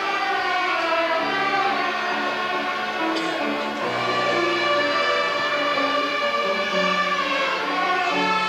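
A children's violin ensemble playing a piece together, bowed notes changing every half second or so at a steady level.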